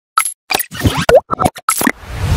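Intro sound effects for a news channel's logo animation: a quick string of about nine short electronic blips, some sliding in pitch, with brief silences between them.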